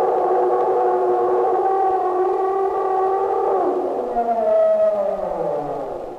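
A loud siren-like drone: several pitches held together as one steady chord, which from about two-thirds of the way in slides downward and fades away.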